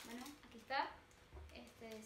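A woman's voice making short murmurs and one brief, louder vocal sound, while a plastic bag lightly rustles as it is pulled off a loaf cake.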